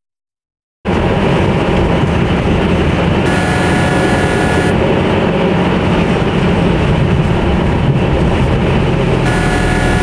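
Car cabin noise while driving slowly on a snowy road: a steady rumble of engine and tyres heard from inside the car, starting about a second in. A steady tone sounds twice, each time for about a second and a half.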